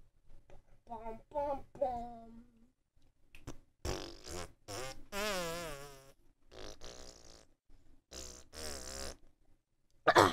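A person quietly making playful vocal noises, not words: short hummed or sung tones, one held with a wavering pitch about five seconds in, mixed with buzzing, sputtering mouth sounds.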